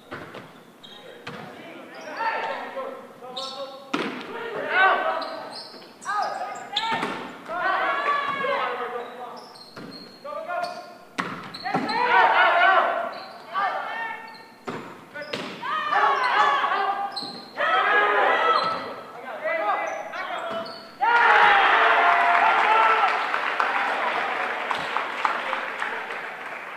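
A volleyball rally in a school gym: the ball is struck again and again with sharp smacks that echo in the hall, while players shout calls throughout. About 21 seconds in, a sudden loud burst of team cheering and yelling marks the end of the point.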